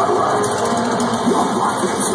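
Live heavy metal band playing: distorted guitars and drums in a loud, dense, unbroken wall of sound, heard from within the crowd.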